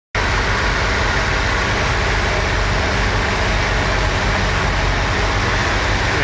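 Reliant Scimitar's Ford Essex V6 engine running steadily at an even speed, recorded close over the open engine bay.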